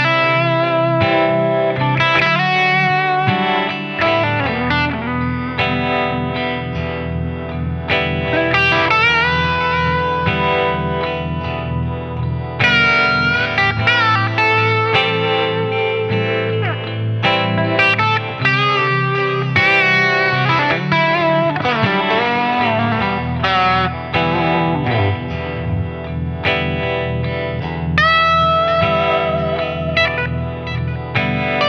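Heritage H-150 electric guitar with humbuckers, played through an amp: a run of lead licks with string bends and wavering vibrato on held notes, over lower notes and chords.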